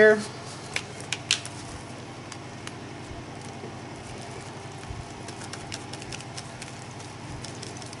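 A few faint clicks and taps in the first few seconds as a plastic stencil sheet is handled and pressed flat onto a journal page, over quiet room noise.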